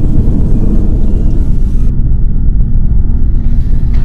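Loud, steady low rumble with little high sound in it, a deep drone laid under the scene.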